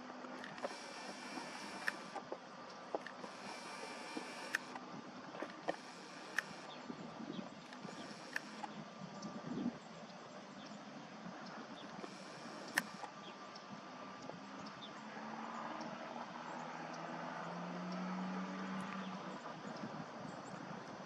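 Faint whir of a camera's zoom lens motor in about five short bursts of a second or so, with small handling clicks between them. A low, steady hum of distant traffic comes in near the end.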